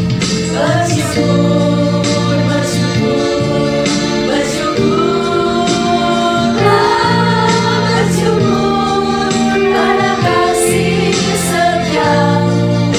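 Several women singing a Christian worship song together, their voices carrying the melody over steady held chords of instrumental accompaniment.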